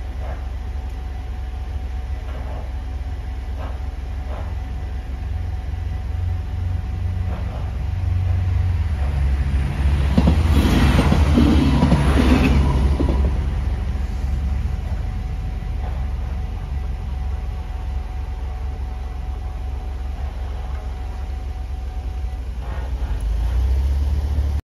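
Alstom Coradia LINT 41 diesel multiple unit passing over a level crossing: its rumble builds, peaks for about three seconds near the middle with a rapid run of wheel clicks, then fades away.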